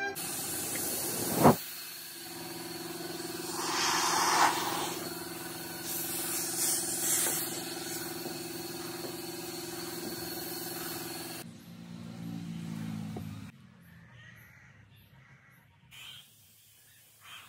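Steady machine hum in a body-repair shop, with two bursts of air hissing, the first about four seconds in and the second a couple of seconds later, and a sharp click near the start. The hum drops away near the end.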